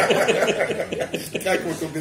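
Several people chuckling and laughing together at a joke, with the laughter dying down near the end.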